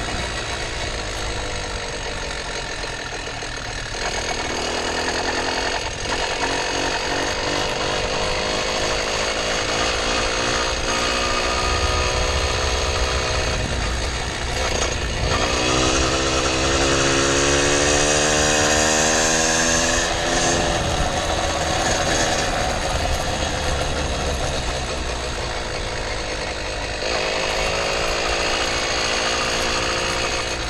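Case-reed two-stroke motorized-bicycle engine running under way. Its pitch rises as it speeds up a little past halfway, holds for a few seconds, then drops back off the throttle.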